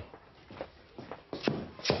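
Glassware being handled behind a pub bar: light shuffling, then a few short knocks near the end.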